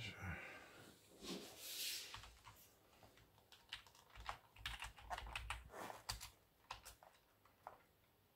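Computer keyboard being typed on, faint: a quick run of short key clicks through the second half, with a brief soft hiss just before it starts.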